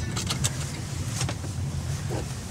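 Car engine running with a steady low hum heard from inside the cabin, with a few short clicks and rustles in the first half and another a little past the middle.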